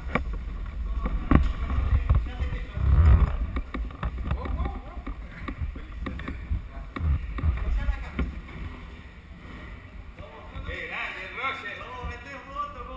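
Low, uneven rumble with knocks from the motorcycle-mounted camera as the bike is moved across the shed floor, engine not running. Indistinct voices can be heard in the background.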